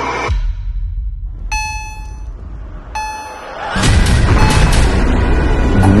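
Dramatic trailer-style soundtrack: a low rumble, then two electronic beeps about a second and a half apart. From about four seconds in, the loud rushing noise of a freight train passing a level crossing takes over.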